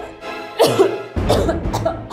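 A woman coughing and gasping twice, short of air, over dramatic background music.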